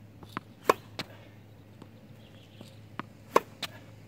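Tennis balls bouncing on a hard court and struck by a racket: two sharp hits of groundstrokes, about two and a half seconds apart, each with lighter ball pops just before and after it.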